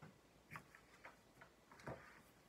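A few faint clicks and taps from a picture book being handled and closed, the loudest just before the end, against near silence.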